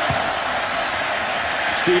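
Stadium crowd noise during a football play, a steady din with no single sound standing out. Commentary speech starts again just at the end.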